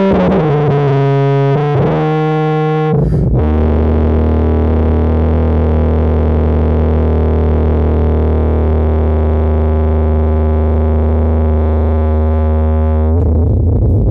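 Tuba, sounding electronically processed, playing a few short notes that step down in pitch, then one long low held note with a thick stack of overtones for about ten seconds, stopping shortly before the end.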